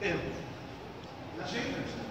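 A man's voice lecturing in short spoken bits: a few words right at the start, a pause, then more speech about one and a half seconds in.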